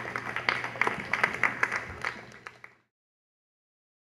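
An audience applauding, with the separate claps easy to pick out. The applause cuts off abruptly to total silence a little under three seconds in.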